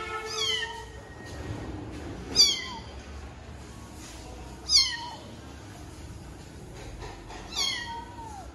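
Brown Bengal kitten meowing four times: short, high-pitched cries that fall in pitch, spaced about two to three seconds apart.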